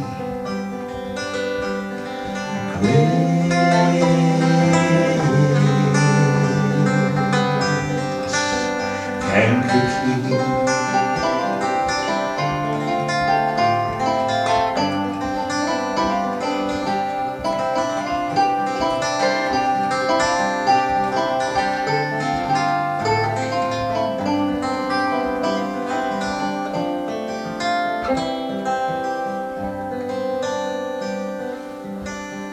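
Live folk band playing an instrumental passage on acoustic guitars and other plucked strings, with no singing; the playing gets fuller and louder about three seconds in.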